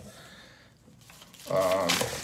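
Faint rustling of tissue packing paper, then about a second and a half in a short wordless hum from a man's voice.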